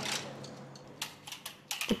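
A rank of soldiers flicking open the folding bayonets on their SKS carbines together: a quick, ragged clatter of metal clicks about a second in.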